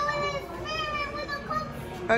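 A young child's high voice making two drawn-out sounds without clear words: a short one, then a longer one about half a second in that slides slightly down in pitch.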